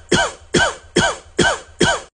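Rhythmic coughing: five short, even coughs at about two a second, each with a brief falling vocal tone, repeated so evenly that they sound like a looped sound effect.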